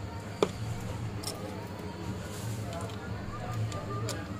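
A sharp click about half a second in and a few fainter ticks after it, from the parts of a Samsung J700H phone being handled and fitted together. A steady low hum runs underneath.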